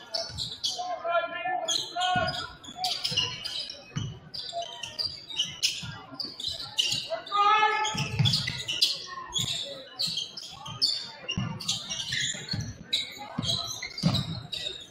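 Basketball dribbled on a hardwood gym floor during live play, short repeated thuds, with players' voices and shouts echoing in a large gym.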